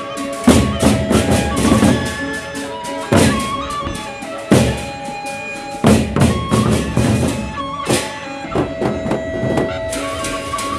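Sasak gendang beleq ensemble playing: big double-headed barrel drums beaten with heavy accented strokes, over a dense run of cymbal clashes and held steady tones.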